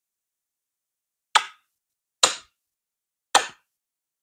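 Three sharp clicks, about a second apart, each dying away quickly, with silence between them.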